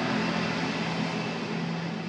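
A steady mechanical hum with one constant low tone, over a light even hiss.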